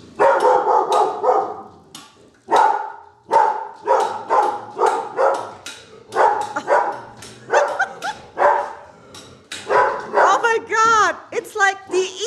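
Small dog barking rapidly and repeatedly in alarm, a string of sharp barks two to three a second: fear barking at a tea kettle set on the floor.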